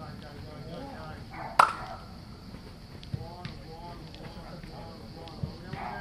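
Scattered voices of people talking and calling out on an open training pitch. A single sharp smack about a second and a half in is the loudest sound, followed later by a few softer knocks.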